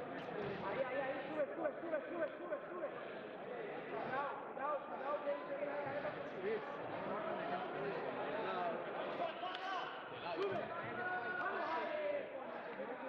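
Several voices talking and calling out over each other, with no single clear speaker standing out.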